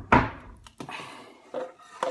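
A single hard thump just after the start, an object knocking against a hard surface, followed by quieter handling and rustling noises.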